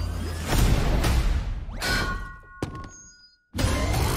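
Film-trailer soundtrack: music with a heavy low hit about half a second in, then a rising sweep and a few ringing tones that fade away to a brief near-silence, before the music cuts back in suddenly just before the end.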